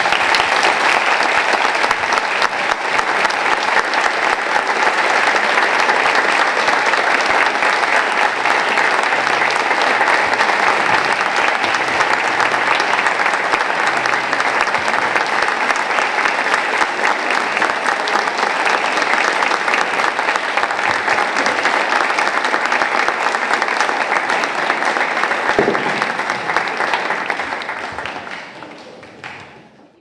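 A large audience applauding, a dense, steady clapping that fades away near the end.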